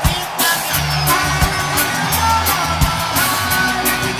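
Live band playing: a bass line of held low notes under drum hits, cymbals and guitar.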